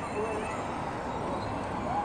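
Steady city street noise with faint distant voices, one short call near the start and another near the end.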